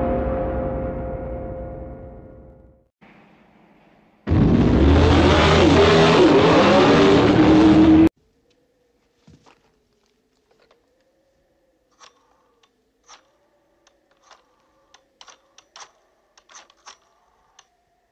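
A held music chord fades out, then a car engine roars loudly for about four seconds and cuts off suddenly. Near silence follows, with faint scattered clicks as a telephone is handled.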